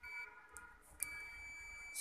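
Digital multimeter's continuity buzzer beeping, a steady high tone: a short blip at the start, then held unbroken from about a second in. The continuous beep shows the phone's charging supply line shorted to ground.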